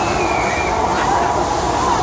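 Loud, steady rumbling background noise of an outdoor amusement ride area at night. A faint, high, wavering cry that falls away is heard in the first second.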